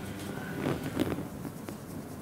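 Faint, soft rustling of a makeup brush sweeping over skin and hair, over quiet room tone, with a couple of slightly louder strokes around the middle.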